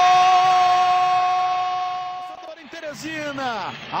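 A Brazilian football commentator's long drawn-out "Gol!" cry, held on one steady pitch until about two and a half seconds in, then breaking into shorter falling-pitch shouts.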